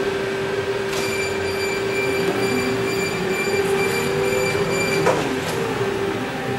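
Electric forklift running, its electric motors giving a steady whine. About a second in, a higher whine joins with a click and holds until it cuts off with another click near five seconds.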